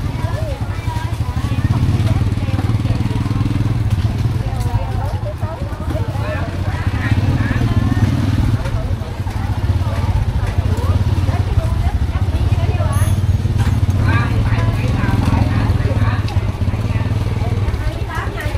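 Crowded market alley: many people talking at once, over a motorbike engine running at low speed close by, its hum swelling several times as it edges through the crowd.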